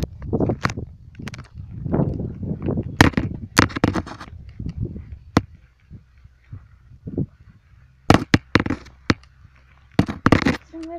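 Irregular sharp knocks and clicks with a low rumble, the handling noise of a handheld phone being jostled with wind on its microphone; a quick cluster of knocks near the end.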